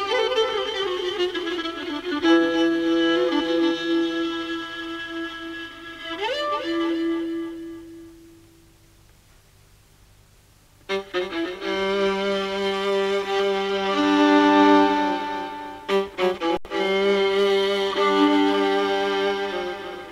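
Violin playing in the Persian mode Shur, with held, wavering notes and a slide up about six seconds in. The note fades away to almost nothing around eight seconds in, and the violin comes back in at about eleven seconds.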